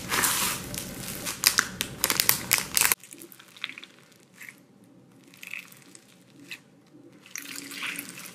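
Foam-bead slime (floam) being squeezed and kneaded by hand, a dense crackle of the beads that cuts off abruptly about three seconds in. Then much quieter soft squishing with scattered small crackles as a glittery foam-bead slime is pressed and stretched.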